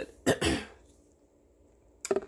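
A woman clears her throat once, a short rasp about a quarter of a second in.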